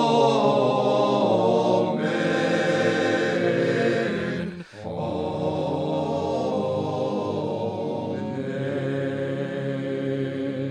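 Slow sacred music of sustained chanted or choral singing, held notes in two long phrases with a brief break about halfway through.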